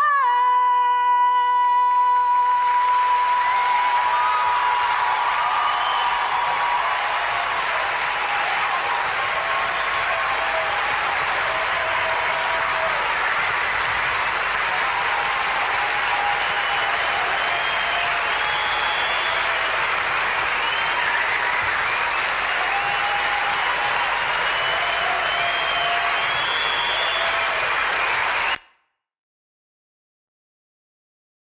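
A female singer's high held note ends about two seconds in. A large concert audience then breaks into sustained applause and cheering, with shouts over the clapping, until the sound cuts off suddenly near the end.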